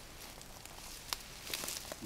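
Faint rustling in dense undergrowth, with a few light sharp clicks about a second in and again about halfway through.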